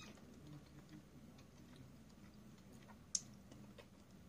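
Faint chewing of a mouthful of soft fettuccine, with small wet mouth clicks over a low room hum. One sharp click about three seconds in.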